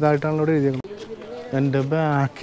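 A man's voice talking to the camera in two short phrases with a brief pause between them.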